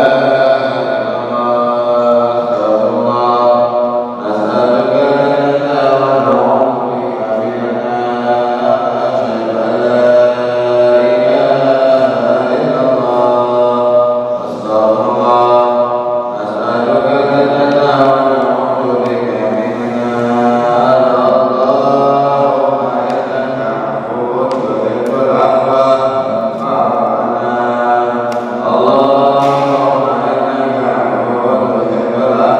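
A man chanting a religious recitation solo into a microphone, in slow melodic phrases with long held, gliding notes and brief pauses for breath.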